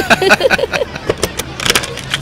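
Bus engine running with a steady low hum, with a few short clicks and rattles.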